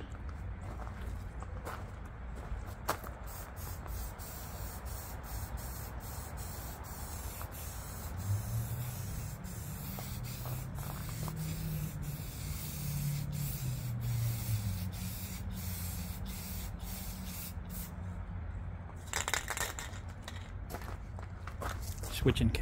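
Rust-Oleum aerosol spray-paint can spraying in a long hiss with many brief breaks as it is worked over the hood, then a few short spurts near the end. The can is nearly empty.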